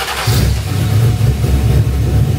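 Shelby GT500 tribute's 7-litre 427 stroker V8 running through its custom exhaust, a loud, uneven, pulsing low note that swells a moment in; it sounds mean.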